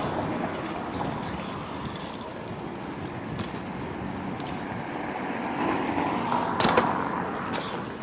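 Steady rolling noise of bicycles riding on pavement, swelling toward the end, with a sharp clack about two-thirds of the way through as a BMX bike drops off a ledge and lands.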